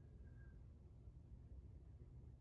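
Near silence: room tone with a steady low rumble.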